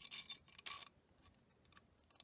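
Faint metallic clicks and rustling as a steel trampoline spring and carriage bolt are handled, mostly in the first second.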